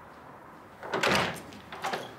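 A door being opened: a loud clattering sound about a second in, then a shorter knock near the end.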